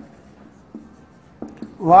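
Marker writing on a whiteboard: faint strokes of the tip across the board with a few light taps. A man's voice begins near the end.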